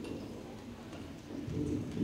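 Low men's voices singing together, coming in about one and a half seconds in after a quieter stretch.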